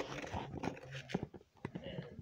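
Hands scooping the stringy flesh and seeds out of a hollowed pumpkin: a run of irregular scrapes and short clicks.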